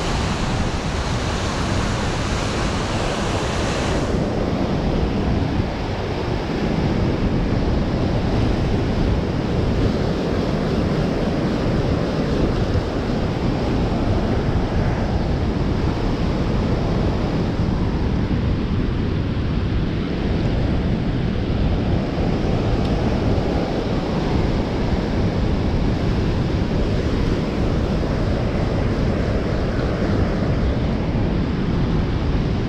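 Turbulent white water rushing out of a hydro canal spillway, a steady loud wash of noise, with wind buffeting the microphone. The higher hiss turns duller about four seconds in.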